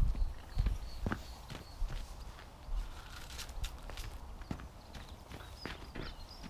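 Irregular footsteps on frosty, snow-dusted grass: scattered short soft knocks, with a low rumble in the first second.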